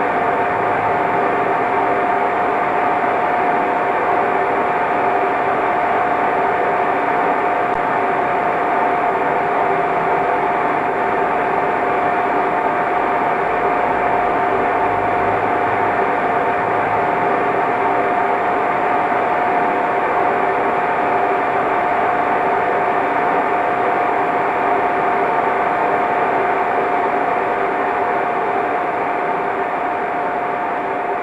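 A steady, unchanging drone: a dense rushing noise with a held hum tone running through it, easing off slightly near the end.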